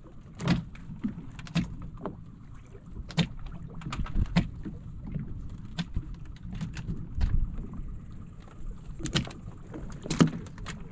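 Sea water slapping and lapping against the hull of a small fishing boat, with irregular sharp knocks and splashes over a low steady rumble.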